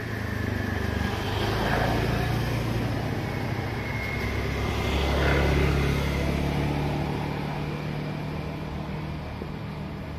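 A motor vehicle's engine running past, its low hum swelling loudest about halfway through and then fading, over the steady rush of a flooded river.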